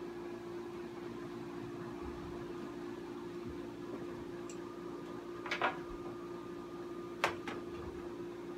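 Steady mechanical hum in a small room, with two short knocks as a clothes iron is picked up and handled, about five and a half and seven seconds in.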